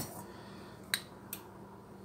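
Stainless steel bowl lifted off a stovetop saucepan, with a sharp metal click as it comes away and two lighter clicks after it. A faint steady low hum runs underneath.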